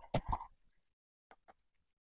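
Two faint, short clicks a fifth of a second apart as a small plastic paint dropper bottle is handled at the desk, then near silence.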